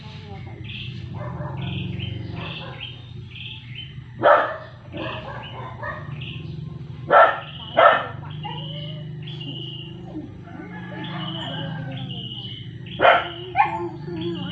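A dog barking in short single barks: once about four seconds in, twice in quick succession about seven to eight seconds in, and twice near the end, with birds chirping.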